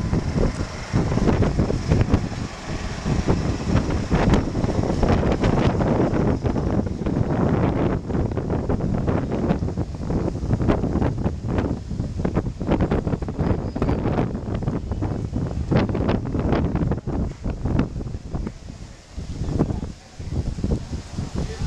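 Strong wind buffeting the camera's microphone, a loud low rumble that rises and falls unevenly with the gusts.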